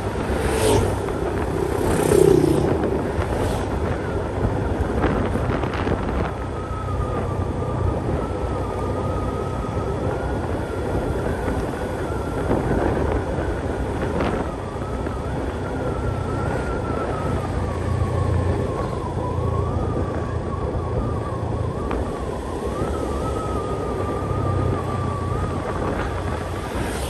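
A vehicle driving along a paved road: a steady engine hum with a faint whine that drifts up and down with speed, over a low rumble. Oncoming motorbikes pass in the first few seconds, the loudest about two seconds in.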